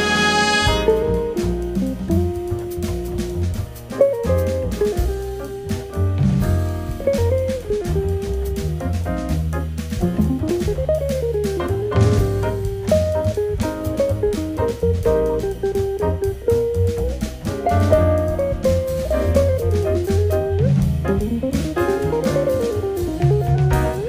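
Big band jazz: a full-ensemble horn chord cuts off about a second in, then a single melodic solo line weaves up and down over walking bass and drums, and the full band comes back in near the end.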